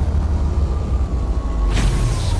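Cinematic logo-intro sound effect: a deep, steady rumble with a faint slowly falling tone, and a whoosh near the end.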